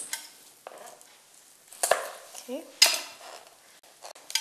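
A kitchen knife and utensils knocking on a cutting board: two sharp knocks about a second apart as spring onions are set out for chopping.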